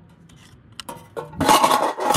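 Small plastic magnetic key-hider box, used as a geocache container, being pulled off a metal light-pole base and handled on concrete: a few light clicks about a second in, then loud scraping and rattling over the last half-second.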